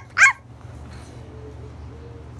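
A small terrier gives one short, high-pitched yap just after the start.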